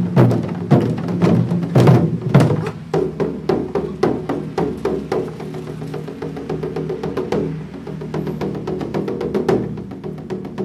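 Taiko-style barrel drum ensemble playing: loud, dense drum strikes for the first few seconds, then quieter rapid light strokes, which build again near the end.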